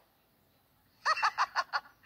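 After about a second of near silence, a high-pitched voice gives a quick run of short laughs, six or seven in under a second, each rising and falling in pitch. It is heard through a tablet's speaker.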